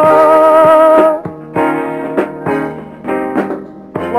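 Rock band playing during a soundcheck rehearsal: a held, wavering note ends about a second in, followed by a handful of separate guitar and keyboard chords struck and left to ring.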